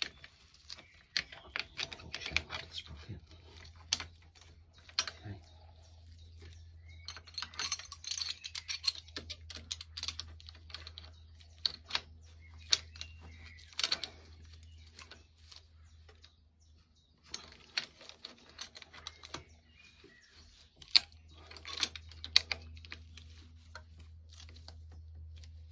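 Motorcycle drive chain clinking and rattling as its links are worked by hand onto the steel rear sprocket. It comes as irregular runs of sharp metallic clicks.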